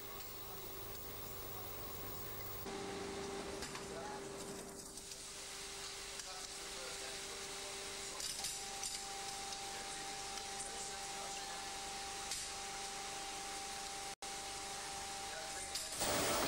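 Steady workshop machinery hum with a constant droning tone, stepping up a little about three seconds in, with a few faint light taps.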